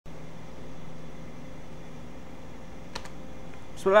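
Steady low background hum in a small room, with one sharp click about three seconds in; a man starts speaking just before the end.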